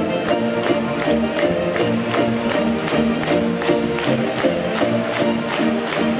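Lively Russian folk dance music played by instruments, driven by a fast, even beat of sharp hand claps, about four a second.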